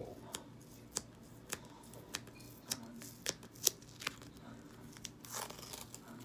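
Masking tape being picked at and peeled off the top of a clear plastic card holder: a run of small sharp clicks and crackles, with a longer tearing rasp about five seconds in.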